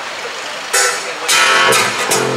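Live band starting a song: a guitar chord rings out under a second in, then at about a second and a half the guitar comes in louder with a steady low bass note underneath.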